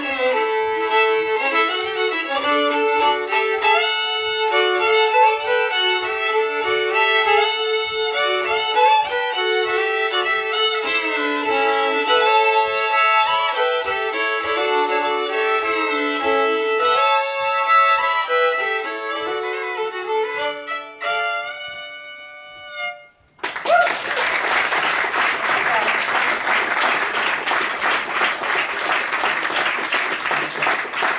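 Two fiddles playing a lively Cajun twin-fiddle tune in harmony over a steady tapping beat, ending on a held note a little over two-thirds of the way in. After a brief gap, audience applause fills the rest.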